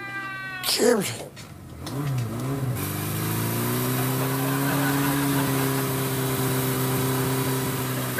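A man's short whimpering wail, falling in pitch, at the start. From about two seconds in, a motorcycle engine revs twice and then runs steadily under load with road noise as it tows along.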